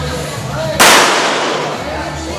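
A single pistol shot about a second in, sharp and loud, with a ringing tail that fades away over about a second.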